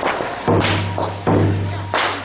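Procession percussion: three heavy drum beats, each with a cymbal-like crash, booming and ringing out about two-thirds of a second apart.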